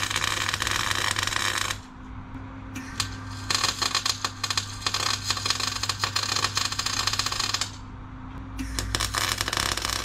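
MIG welding arc on steel crackling in three runs: the first stops just under two seconds in, a longer one runs from about three and a half seconds to nearly eight, and another starts near the end. A steady low hum sits underneath.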